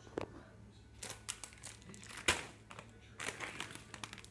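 Plastic packaging crinkling and rustling in irregular bursts as it is handled, with one sharper knock about two seconds in.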